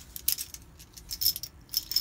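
Loose 7mm rifle cartridges clinking against each other as a handful is picked up and handled, a run of irregular light metallic clicks.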